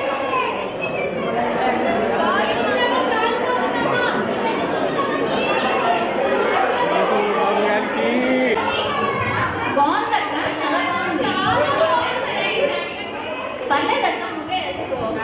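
Crowd chatter: many voices talking at once, steady throughout, with a voice over the microphone among them.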